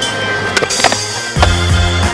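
Two sharp skateboard clacks about half a second apart, a little after the start, over background music. A heavier bass beat comes in about a second and a half in.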